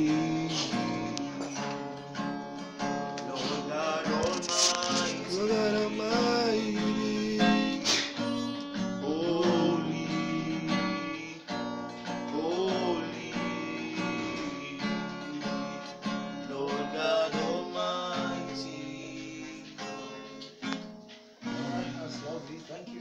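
Acoustic guitar played in chords, with a voice singing a slow melody along with it; the playing dips briefly near the end.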